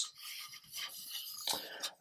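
Faint rubbing and light scraping of a plastic model-kit hull half on its sprue as it is turned over in the hands, with a brief louder touch about one and a half seconds in.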